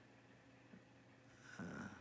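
Near silence with a faint steady hum, broken about a second and a half in by one short, breathy vocal sound from a man.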